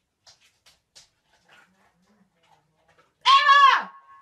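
A few faint ticks, then near the end one loud, high-pitched scream lasting under a second, wavering and dropping in pitch as it breaks off.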